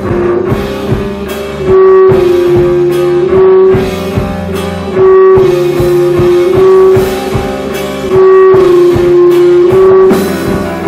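A live rock band of electric guitar, bass guitar and drum kit playing loudly, with an instrumental passage and no singing.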